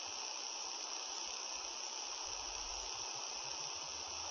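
Steady, even hiss of a recording's background noise, with a faint low rumble now and then.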